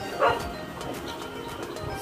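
A dog gives one short bark or yip about a quarter second in, over faint background music.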